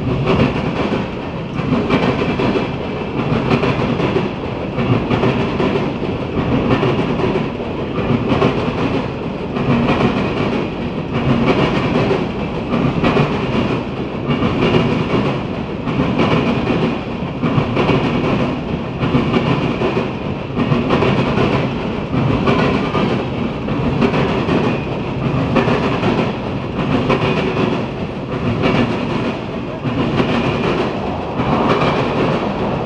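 Freight train of loaded ethanol tank cars rolling past, its steel wheels clacking over the rail joints in a steady, evenly repeating clickety-clack.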